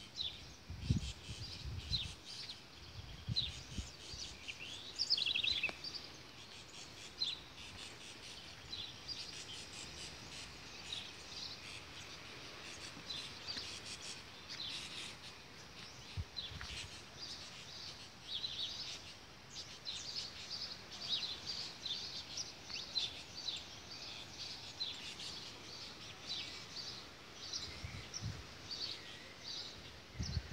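Small birds chirping on and off throughout: many short, high calls over a faint outdoor hiss. A few soft low thumps come in the first few seconds and again near the end.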